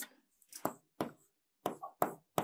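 Stylus tapping and scratching on the glass of an interactive digital board while writing: a short run of faint, sharp clicks, about five in two seconds.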